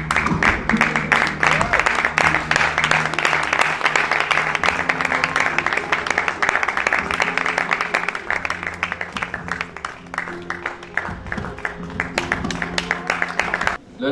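An audience applauding over background music with long held notes; the clapping thins a little after about ten seconds, and both cut off abruptly just before the end.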